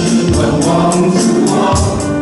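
A worship team of men and women singing a Chinese praise song into microphones, with keyboard accompaniment and a steady, high percussion beat.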